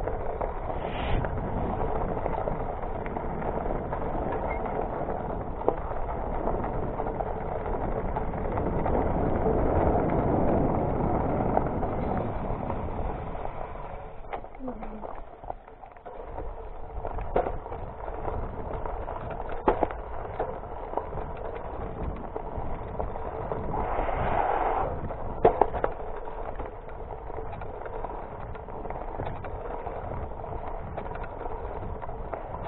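Diamondback Edgewood hybrid mountain bike ridden down a dirt trail: steady tyre and wind noise with rattles and sharp knocks from the bike over bumps, easing off briefly about halfway through.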